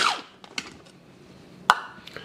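Small electric food processor's motor spinning down with a falling whine as a pulse ends. Then quiet handling of the plastic bowl and lid, with a few light ticks and one sharp plastic click near the end as the lid comes off.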